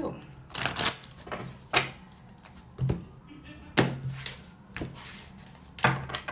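A deck of tarot cards being shuffled and handled by hand: a string of sharp, irregular snaps and slaps of the cards.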